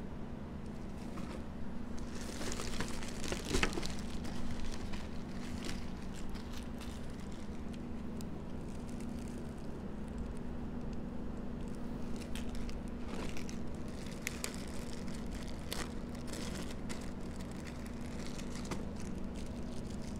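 Small clear plastic zip bags of mounting screws crinkling and rustling as they are handled, in scattered bursts, busiest a few seconds in and again past the middle.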